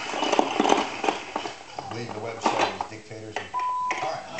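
Large plastic building blocks clicking and clattering as they are handled on a play table, with a voice in the middle. Near the end comes a short, steady, single-pitch electronic beep.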